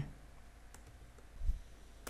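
A few sparse keystrokes on a computer keyboard: faint clicks, with one duller, louder knock about a second and a half in.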